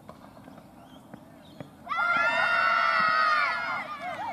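Cricket fielders shouting an appeal together: several women's voices in one loud, held cry that starts about two seconds in, lasts nearly two seconds and then fades.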